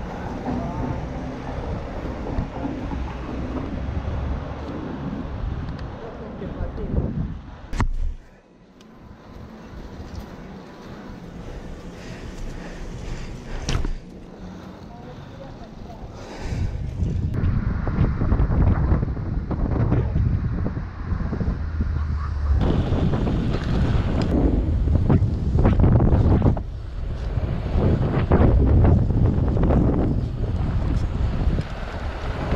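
Wind buffeting an action camera's microphone as a mountain bike rolls downhill on pavement, a dense low rumble of wind and tyres. It drops quieter about a third of the way in, then comes back heavier and gustier for the second half.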